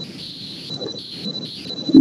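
A pause in speech: faint background noise with a steady high-pitched whine.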